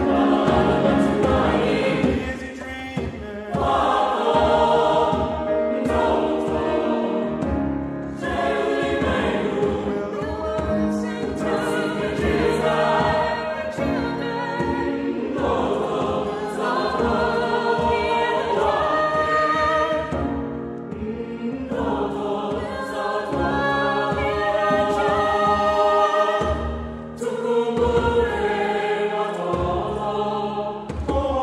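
SATB choir singing in Swahili, accompanied by piano and a djembe.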